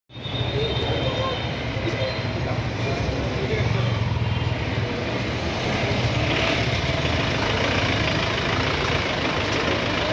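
Engines of police jeeps running close by, a steady low rumble, with general traffic noise.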